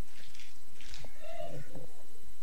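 A person's voice making one short, squeaky, rising-and-falling vocal sound a little over a second in, with a couple of light knocks around it.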